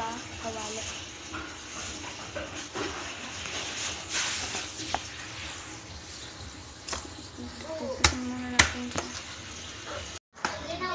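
Kitchen knife handling and cutting garlic on a plastic cutting board, with two sharp knocks a little after eight seconds in. Voices are heard in the background.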